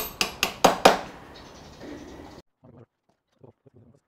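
Rapid hammer blows, about four a second, on a thick aluminum angle bracket fitted over a hardwood workbench leg. They stop about a second in, leaving only faint small knocks.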